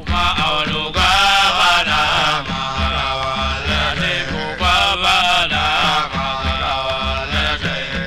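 Hausa praise singing: a voice sings long, wavering, ornamented lines over a steady pattern of low drum beats.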